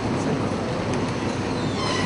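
Audience applauding steadily, a dense even wash of clapping.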